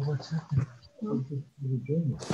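Speech: people talking over a video call.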